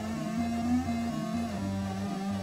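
Chiptune music generated by a real MOS 6581 SID sound chip on a homemade 6502-based player, heard through room speakers. A steady synthesized bass line runs under a buzzy lead melody that steps down in pitch about one and a half seconds in.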